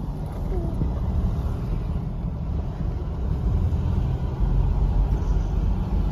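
Steady low rumble of a car driving, heard from inside: engine and road noise, growing heavier about four seconds in.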